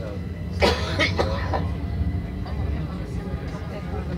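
A man coughs about three times in quick succession, starting just over half a second in, over the steady low rumble of a tram running.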